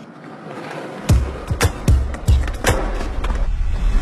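Skateboards rolling with sharp clacks of the boards hitting the ground, over background music. The music nearly drops away at first and comes back with a heavy beat about a second in.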